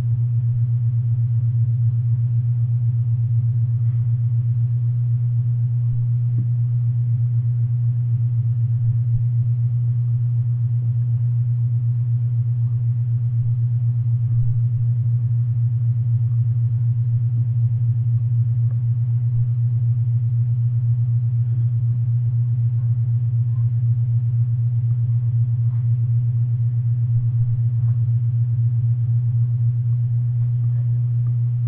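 A loud, steady low hum that does not change, with no distinct knocks or scrapes standing out over it.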